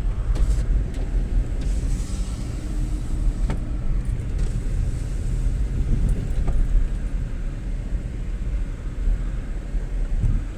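A car driving, heard from inside its cabin: a steady low rumble of engine and tyres on the road, with a faint knock about three and a half seconds in.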